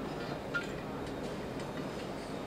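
Steady room noise of a large exhibition hall, with a faint light click about half a second in from metal fittings being handled during assembly.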